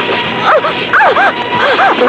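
A rapid series of short, high yelps, each rising and falling in pitch, like a dog's, over a loud, steady noisy background with a thin steady tone.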